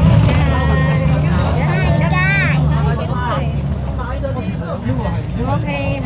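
Steady low drone of a car heard from inside the cabin, under people's voices talking.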